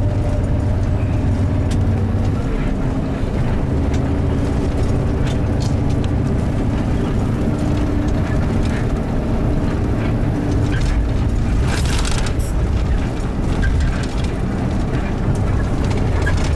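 Steady low rumble of a moving coach bus, its engine and road noise heard from inside the passenger cabin, with a few brief rattles about two-thirds of the way through.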